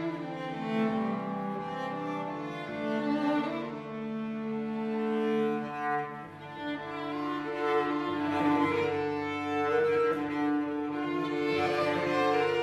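Chamber ensemble music led by cello and violin, playing long held notes that change pitch every second or two and swell louder in the second half.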